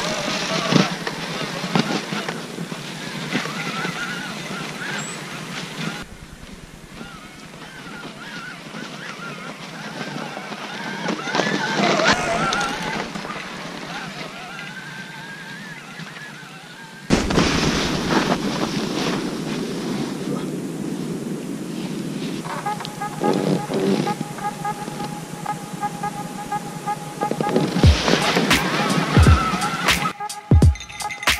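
Riding noise from a camera on a mountain bike on a snowy trail: a steady rush of wind and tyres in snow, with a faint wavering whine, broken by abrupt cuts. Music with a beat comes in near the end.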